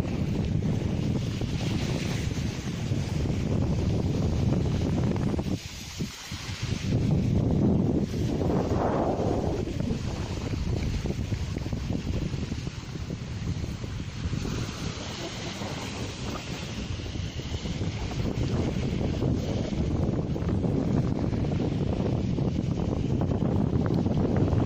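Wind buffeting the microphone over small sea waves washing onto the beach. The wind noise dips briefly about six seconds in, then picks up again.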